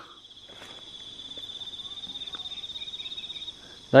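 High-pitched insect song: a steady trill, with one louder, rapidly pulsing call that swells and then cuts off suddenly about three and a half seconds in.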